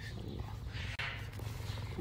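Cheetah purring close up: a steady low rumble, with a short hiss just before the middle.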